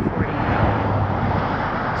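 Strong wind buffeting the microphone: a steady, loud rushing noise heaviest in the low rumble.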